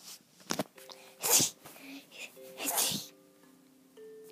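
A person sneezing twice, about a second and a half apart, the second sneeze longer. A few held music notes start underneath about a second in.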